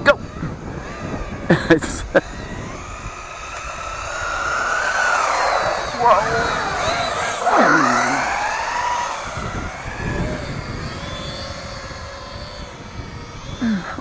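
Small electric motor of a WLtoys 4WD RC truck running at speed, a high whine that swells, sweeps up and down in pitch as the truck passes, and fades away.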